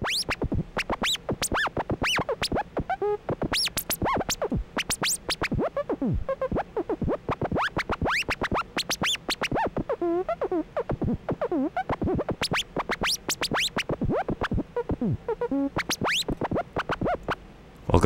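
MDA DX10 software FM synthesizer playing a fast, even run of short electronic notes, several a second, many of them sweeping quickly up or down in pitch.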